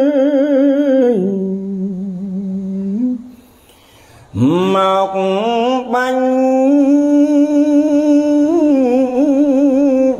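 Khmer Buddhist smot chanting by a solo male monk: long drawn-out notes with a wavering vibrato. About a second in the voice drops to a lower note, breaks off for a breath around three seconds in, then swoops up into a long ornamented note that carries on to the end.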